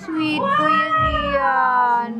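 A single human voice holding one long, high note for about two seconds, gently rising and then sliding lower near the end.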